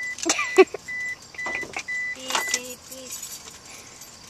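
Car's warning chime beeping repeatedly, about two short high beeps a second, stopping about two and a half seconds in.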